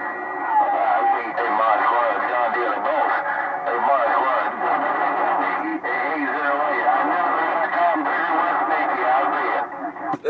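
Voices received through a President HR2510 radio's speaker on CB channel 6: several stations talking over one another through static, thin and muffled and hard to make out. A faint steady whistle runs under them.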